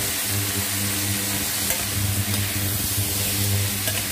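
Star fruit and tomato pieces sizzling in hot oil in a stainless steel kadai while a metal spatula stirs them, with a few light scrapes. A steady low hum runs underneath.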